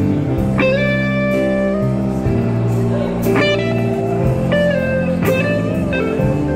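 Live blues-rock band in an instrumental passage: electric guitar lead notes bending in pitch over held organ chords, with bass and drums and a cymbal crash about every two to three seconds.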